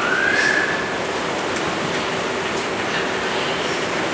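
Steady rushing noise filling a large hall, with a faint thin whistling tone that rises and holds through the first second.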